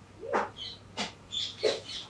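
A woman sobbing, a series of short catching, sniffling breaths about every half second.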